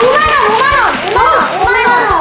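Children shrieking and shouting excitedly in high-pitched voices that swoop up and down, with a few short, dull low knocks underneath.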